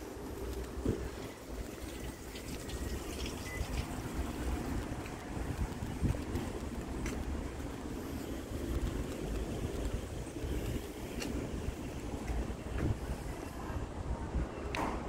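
Wind noise on the microphone: an uneven low rumble that rises and falls, with a few faint ticks over it.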